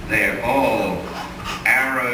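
Speech only: a man talking into a handheld microphone, in words the transcript does not make out.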